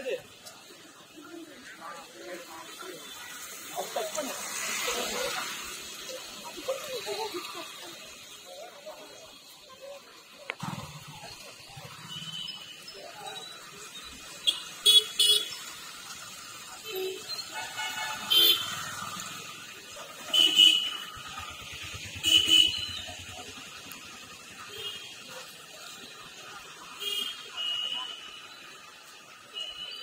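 People talking, with several short, shrill, sharp bursts cutting in through the second half as the loudest sounds.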